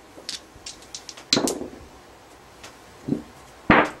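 A pair of dice clicking lightly in the hand, then thrown with a short clatter across a felt craps table, followed near the end by a single sharp knock as the plastic on/off puck is set down on the layout.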